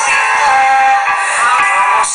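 A woman singing a Greek song live into a microphone, accompanied by a small band of violins and keyboard, with a long held note in the first second. The recording sounds thin, with almost no bass.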